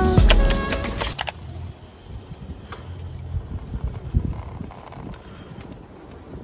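Background music that stops about a second in, followed by the faint, low, uneven rumble of a bicycle being ridden along a paved path.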